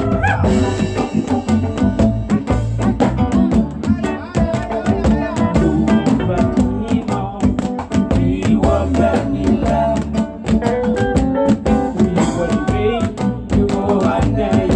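Kaneka band playing live: a male lead vocal over electric guitar, bass and drums, with a steady beat.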